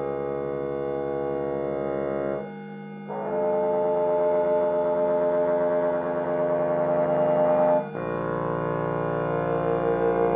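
Live electronics playing layered, sustained synthesized chords through loudspeakers. The chord drops away about two and a half seconds in and a new one enters half a second later, with one bright held tone on top. That chord cuts off suddenly near the end and gives way to a different chord with a wavering tone.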